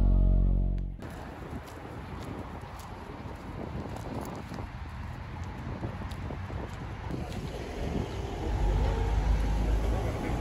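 Soft background music ends abruptly about a second in, giving way to outdoor street ambience with the hum of road traffic, which grows louder near the end.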